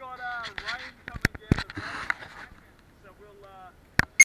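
Indistinct voices talking, with two sharp knocks about a second in and a short rustle from the camera being handled. No engine is heard running.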